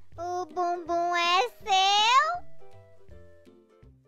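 A high-pitched cartoon voice speaks two short, sing-song phrases over light background music; the music carries on alone for the last second and a half.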